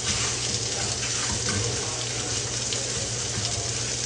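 Sausages sizzling in a frying pan on the stove: a steady hiss, with a low steady hum beneath.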